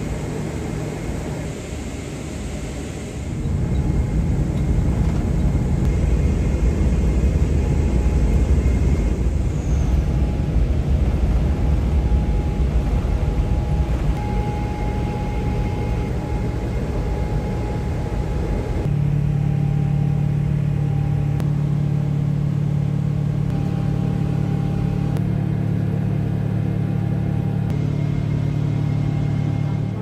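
Cabin noise of a Boeing 777-300ER airliner: a steady low rumble of its GE90 jet engines and airframe that grows louder about three seconds in, then settles into a steadier low drone with a hum about two-thirds of the way through.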